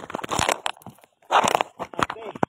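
Crackling, rubbing handling noise from a phone being moved and pressed against something close to its microphone, with a brief pause about a second in before another loud burst.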